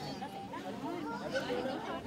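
Faint background chatter of voices, low under the room's ambience, with no single loud event.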